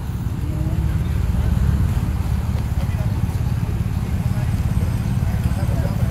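Steady low rumble of road traffic passing on a busy street, with faint voices behind it.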